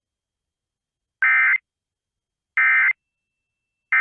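Emergency Alert System end-of-message signal: three short, buzzy digital data bursts, evenly spaced a little over a second apart, marking the close of the alert broadcast.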